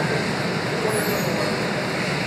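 Steady background noise of a large hall with hard walls, an even rumbling hiss with no distinct events.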